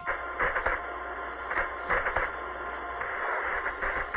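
Radio static: a narrow-band hiss with irregular crackling surges over a low steady hum, the sound of a radio link to the spacecraft breaking up.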